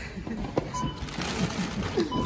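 Supermarket self-checkout beeping: one short electronic beep just under a second in, over background shop voices, with the crinkle of a plastic crisp packet being handled.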